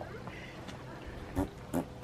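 A horse passing gas: two short puffs near the end.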